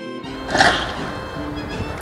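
A song cuts off and scrapyard noise takes over: demolition machinery tearing into a locomotive's metal body, with one loud, high metallic screech about half a second in.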